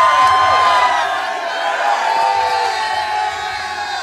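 A crowd of fans cheering and shouting, many voices yelling at once, loudest over the first second and easing a little after.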